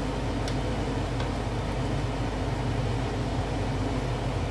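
Egg rolls sizzling steadily as they shallow-fry in oil in a pan, over a steady low fan hum, with a couple of light tong clicks early on.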